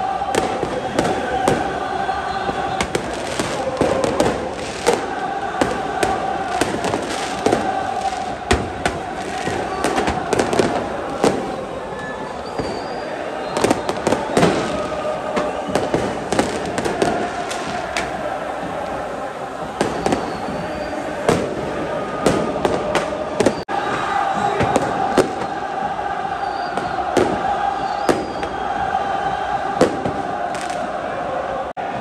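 Large stadium crowd of football supporters chanting and singing in unison, with frequent sharp bangs of firecrackers going off among them during a flare display.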